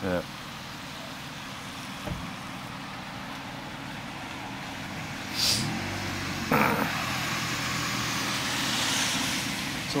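Steady street traffic noise, with a vehicle passing that swells and fades near the end. A single knock comes about two seconds in, and there are a couple of brief voice sounds around the middle.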